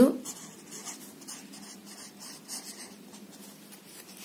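Chisel-tip felt marker writing on paper: a string of soft scratchy strokes as a word is written out.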